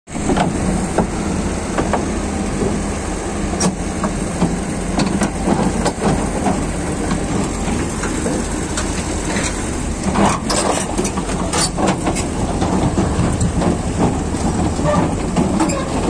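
Heavy diesel engine running steadily with a low rumble, with scattered metallic clanks and knocks, most frequent around ten to twelve seconds in.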